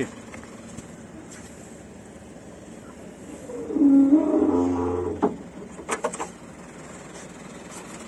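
Hydraulic drive of a truck-mounted aerial lift whining with a low hum for about a second and a half as the boom and basket move, followed by a few sharp knocks.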